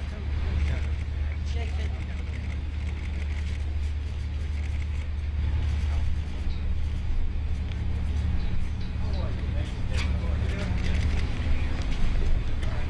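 Outdoor ambience of a steady low rumble, like idling motorcade vehicles, under indistinct voices and many scattered sharp clicks.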